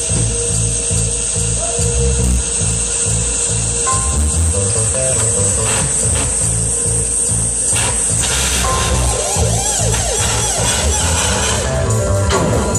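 Live experimental noise music from a band with electronics: a repeating low pulsing beat under a steady high hiss and a rough, drill-like noise texture. Swooping tones rise and fall over and over in the last few seconds.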